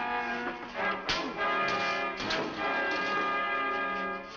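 Dramatic orchestral film score with brass, playing steadily, cut by sharp hits about a second in and again a little after two seconds, the punches of a fistfight.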